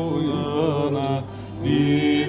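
A woman singing a wordless "ooh" line over a plucked bağlama (long-necked Turkish lute). Her voice wavers in pitch about half a second in, breaks off briefly at about a second and a half, then comes back on a loud held note.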